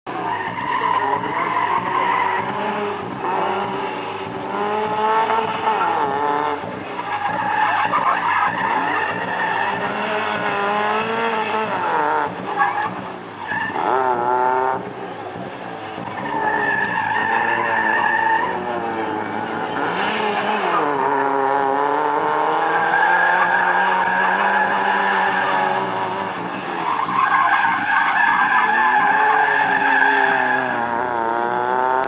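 Fiat Seicento's small petrol engine revving up and down as it is thrown round a tight slalom, with its tyres squealing several times, each for a second or two, through the turns.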